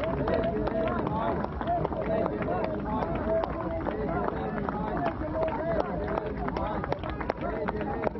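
A large crowd with many voices calling out and talking over one another at once, recorded on a phone.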